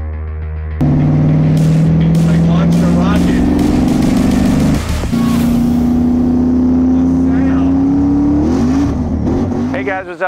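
Car engine under power with intro music: a loud engine note climbing slowly in pitch, a short break about five seconds in, then a higher note climbing again.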